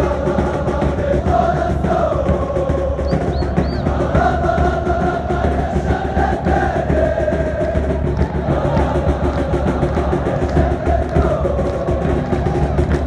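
A crowd of football supporters singing a chant in unison, backed by steady drumming, without a break.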